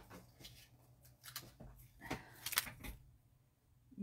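Paper and thin metal being handled on a craft mat: a handful of light taps and clicks as die-cut cardstock, vellum and a metal cutting die are set down, with a quick cluster of taps about two seconds in.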